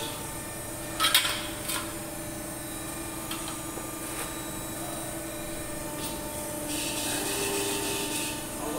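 Thin sheet-metal strip scraping and sliding along a press brake's die as it is fed into place, with two short, loud rasping scrapes about a second in, over the machine's steady hum; a steady high hiss comes in near the end.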